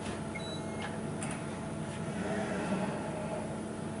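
Mitutoyo BHN706 coordinate measuring machine running with a steady mechanical hum while its probe moves between measuring points. A short electronic beep comes near the start and a click about a second in.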